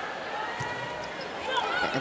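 Indoor volleyball arena sound, quieter than the commentary around it: a low crowd hum with a few short thuds of the ball being served and played. A voice begins near the end.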